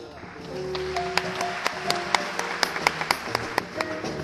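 Acoustic jazz piano trio playing live: held piano notes over double bass, with a run of crisp drum strokes, several a second, from about a second in.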